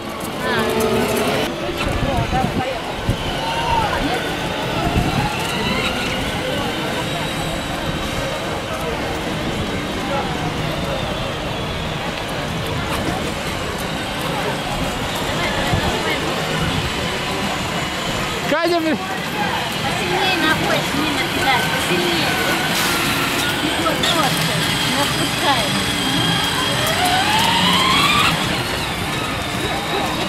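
Children's battery-powered ride-on toy jeeps driving, their small electric motors whining, under a steady background of indistinct children's and adults' voices.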